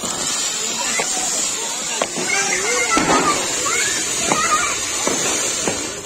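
Anar (flower-pot) firework fountain burning, a steady high-pitched hiss as it sprays sparks, which begins suddenly as it catches and fades near the end.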